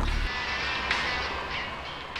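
A SEAT Ibiza driving off, its road and engine noise gradually fading, under background music.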